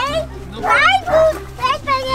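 A young child's high-pitched voice, talking or exclaiming in several short phrases over a low steady hum.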